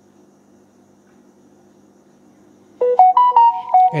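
Smartphone alert chime, a short melody of several bright notes, sounding about three seconds in as the Bluetooth pairing request for the earbuds comes up. Before it, only a faint steady hum.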